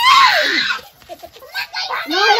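A woman's shriek that falls in pitch and breaks off under a second in, followed by faint voices.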